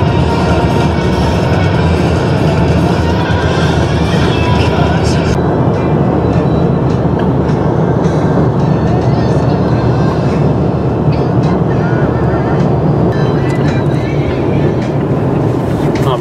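Music with singing, playing over the steady noise of a car travelling at highway speed.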